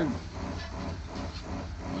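Steady low rumble of an idling engine, with a faint hiss over it.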